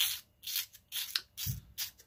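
Close handling noise from a feather-fletched crossbow bolt being moved and rubbed by hand right at the microphone: about half a dozen short brushing scrapes, with a low bump about one and a half seconds in.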